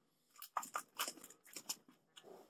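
A quick run of short, sharp clicks and knocks close to the microphone, about eight in a second and a half, then stopping.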